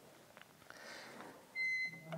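A short pause: a faint soft hiss, then about one and a half seconds in a brief, steady, high-pitched beep-like tone lasting about a third of a second.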